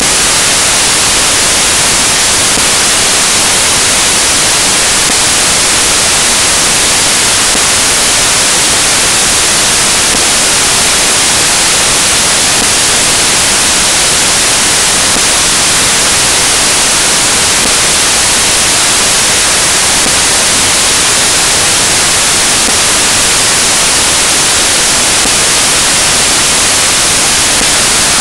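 Loud, steady hiss like static or white noise, bright and unchanging throughout.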